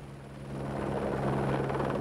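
Helicopter heard from inside the cabin: a steady low drone with a rushing noise over it, fading in over the first half second.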